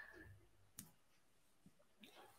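Near silence: a pause in speech, with one faint click a little before the middle.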